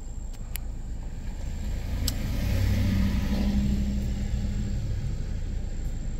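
A pickup truck drives past on the street, its engine hum and tyre noise swelling to a peak in the middle and then fading, over a low steady rumble. There is a sharp click shortly before it passes.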